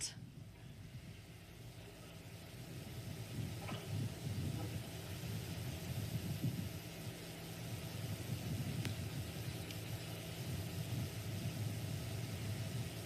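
A low, steady hum with a faint rumble beneath it.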